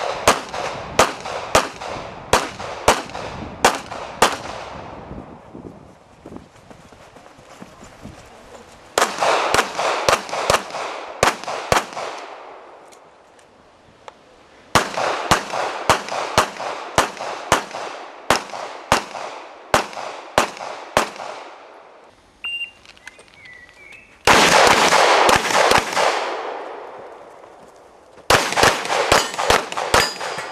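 Handgun shots from Glock pistols in quick strings of about two shots a second, each string several shots long and broken by short pauses. Near the two-thirds point the shots come in a much faster, denser cluster.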